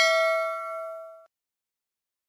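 Bell-ding sound effect for a clicked notification bell. It rings out and fades, then cuts off abruptly a little over a second in.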